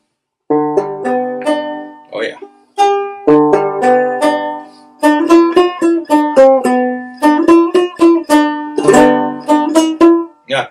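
Homemade five-string banjo built with a Dynaflow car part, played clawhammer style: a few separate plucked chords, then from about five seconds in a quick, steady run of picked notes.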